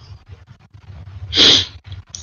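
A single short, sharp burst of breath into a microphone, about one and a half seconds in, over a faint low hum.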